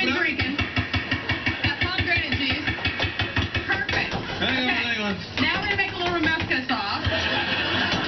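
Overlapping voices and laughter, with a fast, even pulse underneath for the first few seconds.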